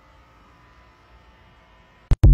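Quiet background ambience: a faint, steady hiss with a low rumble and no distinct sound.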